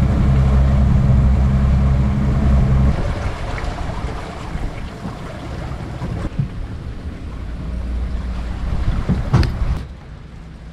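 Outboard motor idling with a steady low hum, cut off abruptly about three seconds in. Rumbling wind-like noise follows, with a sharp knock near the end.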